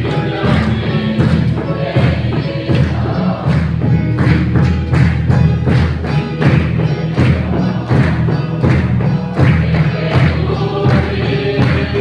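A congregation singing a hymn together, kept in time by a steady drum beat at about two strokes a second, with hand clapping.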